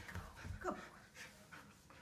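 An Australian shepherd gives a short whine that falls in pitch a little over half a second in, amid soft thumps and rustling as a cloth garment is pulled onto it.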